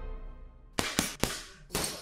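Music fading out, then four sharp impact sound effects of an animated logo outro, coming in quick succession with short decays; the last one trails off.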